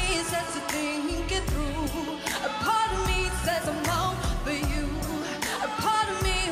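Live R&B pop song: women's voices singing sustained, wavering notes over a drum beat and bass.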